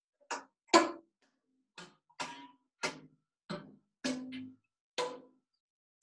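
Homemade kalimba of bobby-pin tines over a pencil bridge on a cookie tin, plucked one tine at a time: about nine separate plucks, each a short metallic twang at a different pitch that dies away quickly. The sound comes through a Zoom call's compression and isn't particularly musical.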